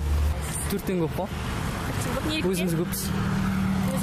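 Brief snatches of a voice over a steady low rumble of street noise outdoors, with a steady low hum coming in about halfway through.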